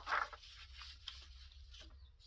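A sheet of paper being handled and shifted on a tabletop. There is a brief rustle right at the start, then faint intermittent rustling.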